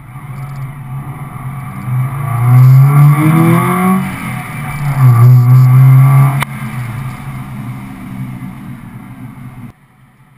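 Car engine heard from a hood-mounted camera, revving up with its pitch rising for about two seconds as the car accelerates, then loud again for another second or so after a brief dip. About six seconds in the loud part stops suddenly with a sharp click, leaving a lower steady running sound.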